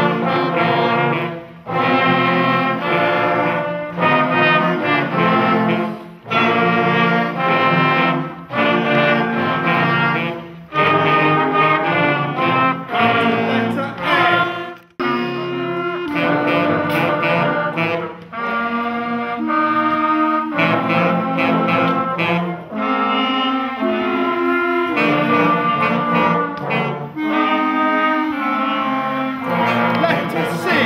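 Beginner wind band of flutes, clarinets, trumpets and trombones playing a simple tune together. It goes in phrases of held notes a second or two long, broken by brief breaths.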